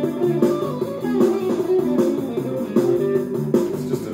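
Electric guitar being played: a rhythmic run of picked notes and chords repeating at an even pace over a low bass line.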